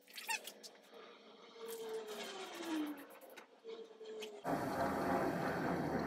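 Electric heat gun switched on about four and a half seconds in, then running with a steady blowing hiss and a low motor hum as it dries fresh spray paint. Before it starts there is a faint, drawn-out falling tone.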